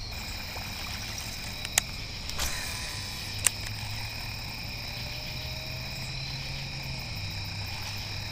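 Steady chorus of night insects such as crickets, several high, even trilling tones held throughout, over a low steady hum. Two sharp clicks break in, about two seconds and three and a half seconds in.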